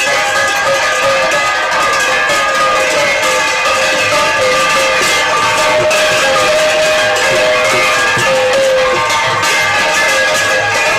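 Brass gongs struck with sticks, hand cymbals clashing and a barrel drum playing together as devotional percussion. The result is a continuous, loud din of ringing metal that never breaks.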